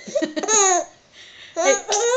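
Baby laughing: a few short high giggles, then a longer squealing laugh that falls in pitch about half a second in.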